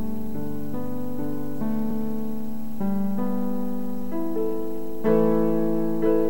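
Electronic keyboard playing slow, sustained chords alone, moving to a new chord every second or so, with a louder, fuller chord about five seconds in.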